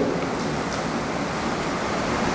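Steady, even hiss of background noise from the microphone and room between phrases of speech, with no other sound.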